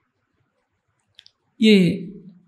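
Over a second of near silence, then a short faint click and a man's voice speaking one word through a microphone near the end.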